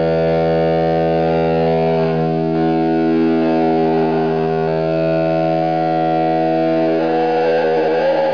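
Distorted electric-guitar drone from a Healy Jazzmaster with a built-in ring modulator, run through a self-input (fed-back) amp, ring mod and mixer: a steady held stack of tones that shifts a little about halfway and breaks up near the end.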